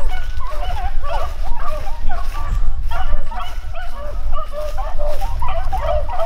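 A pack of beagles baying on a rabbit's track: several dogs' voices overlap in quick, curving cries with no break, over a low rumble.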